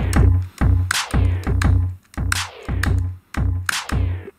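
Sampled drum kit in Kontakt 3 played live: deep kick drum hits at an uneven rhythm, a few a second, with sharp hits that fall steeply in pitch about a second apart.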